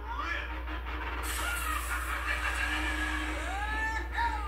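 Soundtrack of a video playing through a tablet's small speaker: sliding pitched tones, joined about a second in by a steady hiss, over a low hum.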